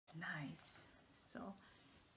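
A woman's voice speaking two short, soft utterances, one of them "So"; speech only.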